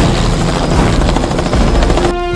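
Police helicopter flying close by, its rotor and engine noise filling the sound, with film score mixed underneath.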